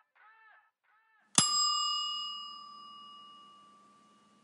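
A single bell-like ding at the end of the outro music, struck about a second and a half in and ringing out, fading slowly. Before it come faint echoing repeats of the music's last notes.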